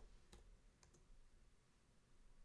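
A few faint, widely spaced computer keyboard keystrokes in near silence.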